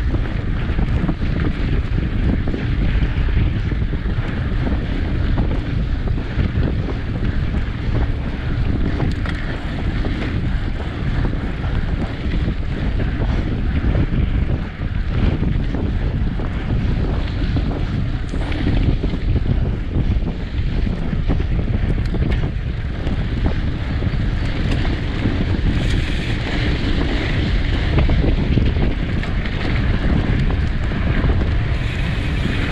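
Steady wind noise buffeting the camera microphone on a bicycle riding at about 32–45 km/h, over the rumble of its tyres on a dirt and gravel forest track.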